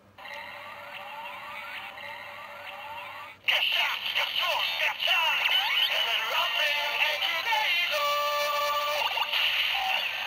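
Kamen Rider Zero-One henshin toy's electronic standby sound: rising synth sweeps repeating about every half second. About three and a half seconds in, a sudden, much louder electronic activation jingle with processed effects takes over.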